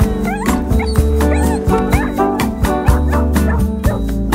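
A dog yipping and whining in several short, quickly rising and falling calls over the first half or so, heard over a pop song with a steady beat.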